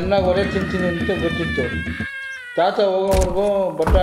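A man narrating the story, his voice rising and falling strongly in pitch, with a short break about two seconds in.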